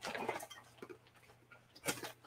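A faint, brief rustle, then a few small, quiet clicks over a low steady hum.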